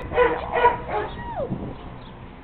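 Dog whimpering: a few short high-pitched yips, then a longer whine that drops in pitch near the end.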